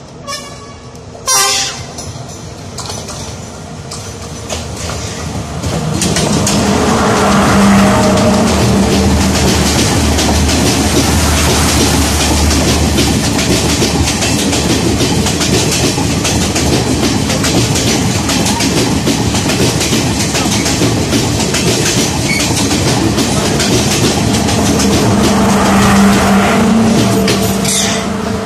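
Sri Lanka Railways Class S14 diesel multiple unit passing on the adjacent track, with two short horn toots near the start. From about six seconds in, loud rushing wheel and carriage noise builds. The diesel power car's engine hum stands out as the leading car goes by and again near the end as the rear power car passes.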